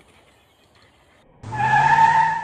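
A loud, steady tyre-skid screech, two held tones over a low hum, starting abruptly about one and a half seconds in and cutting off suddenly after about a second.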